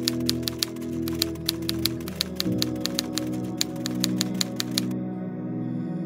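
Typewriter key strikes, a quick uneven run of about six clicks a second that stops about a second before the end, over soft ambient background music with sustained tones.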